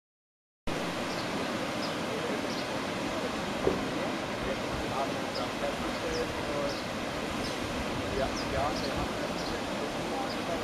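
Small waves breaking and washing on a sandy beach, a steady rush of surf, with distant voices of beachgoers mixed in. The sound cuts out completely for the first half second, then starts abruptly.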